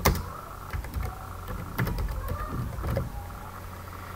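Computer keyboard being typed on: irregular short key clicks in small runs, over a steady low hum.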